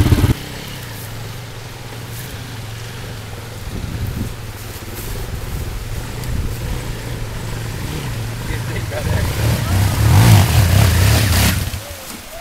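Dirt bike engine running with a low, steady rumble that swells louder about ten seconds in, then drops off sharply just before the end.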